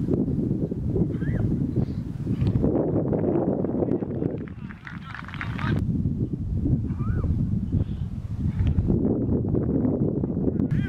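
Wind buffeting the camera microphone with a heavy rumble, with a few distant shouts from players or spectators, about a second in and again around seven seconds in.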